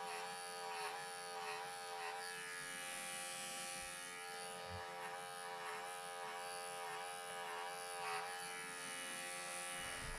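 Cordless electric clippers buzzing steadily as they cut through angora rabbit wool, the pitch dipping slightly now and then as the blades take in wool.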